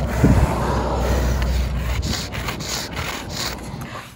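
Sidewalk chalk scraping on concrete pavement in repeated short strokes, with a low rumble on the microphone in the first two seconds.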